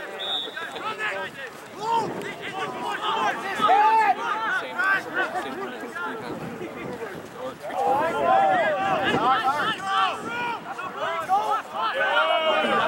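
Indistinct, overlapping shouts of several men's voices, rugby players and sideline supporters calling during play. The shouting is louder about two seconds in and again around eight seconds.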